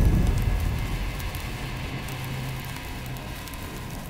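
Fire sound effect of a flaming logo sting: a crackling hiss over a low rumble, slowly fading out after a boom.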